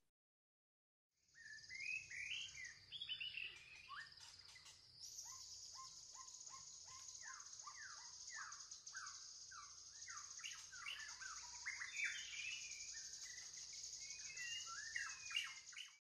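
Faint birdsong: many quick chirps and short downward-sliding whistles over a steady high hiss, starting about a second in.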